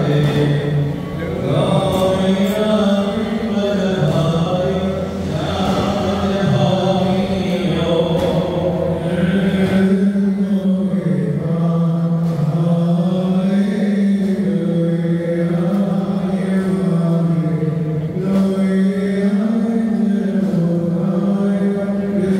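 Men's voices chanting a liturgical hymn of the Jacobite Syriac Orthodox service, a slow melody of long-held notes that steps up and down between a few pitches without a break.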